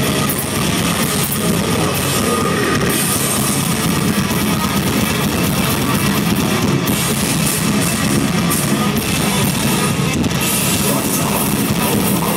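Blackened death metal band playing live at full volume: distorted electric guitars over dense drumming, heard from within the crowd.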